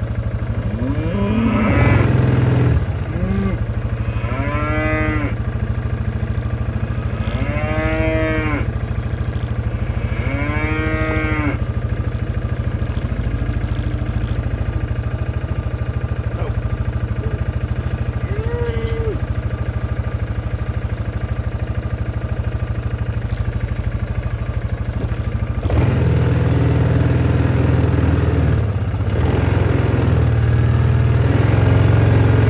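Cattle mooing close by: three long moos, each rising and then falling in pitch, about five, eight and eleven seconds in, then a couple of shorter, fainter moos. A steady low hum runs underneath and gets louder near the end.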